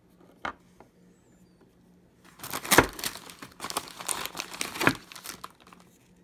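Plastic cookie wrapper crinkling and rustling as it is handled, starting about two seconds in and lasting around three seconds, with a light tap before it.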